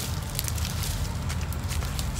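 Footsteps in flip-flops on dry palm fronds, twigs and leaf litter, with scattered crackles and snaps, over a low rumble.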